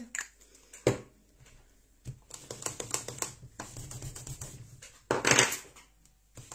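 Clear stamps on an acrylic block being cleaned and scrubbed: a sharp click about a second in, then a run of quick light scratchy ticks, and a louder short rasp near the end.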